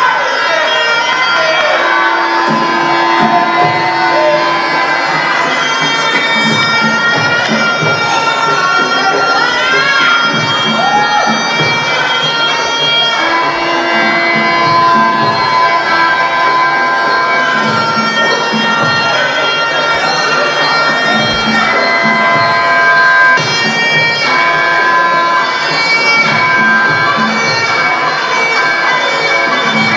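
Muay Thai sarama music: a reedy, nasal pi java oboe plays a sustained, winding melody over a steady hand-drum beat of about two strokes a second.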